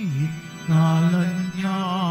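A Filipino church hymn being sung, with a wavering vibrato on the held notes. A phrase ends at the start, and a new, louder line begins about two-thirds of a second in.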